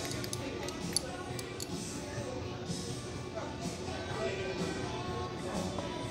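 Background music and a murmur of voices, with a few light clicks and scrapes in the first second or so from a table knife against a small sauce cup.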